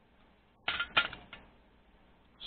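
Three short sharp clicks in quick succession, the first two loudest, as the soldering iron is set down in its stand.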